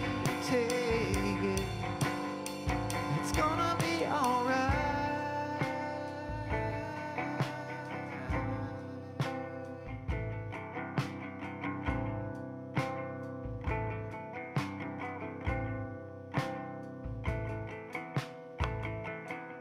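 Live band music: a male voice sings a sliding line that ends about four to five seconds in. Then a small plucked acoustic string instrument plays on over a drum kit, with a kick drum about once a second and cymbal strikes.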